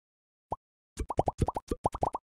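Short, bubbly 'plop' pop sound effects, each rising quickly in pitch: one about half a second in, then a rapid run of about ten from one second on, a logo-animation sound effect as small squares pop into place.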